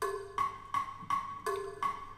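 Electronic metronome clicking a steady beat, a little under three clicks a second, with every fourth click accented by a lower tone to mark the start of each bar: a count-in before the guitar comes in.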